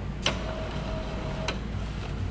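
Epson L805 inkjet printer drawing a loaded ID-card tray in through its CD/DVD tray slot to start printing: a click, a steady motor whine for a little over a second, then another click as the tray stops.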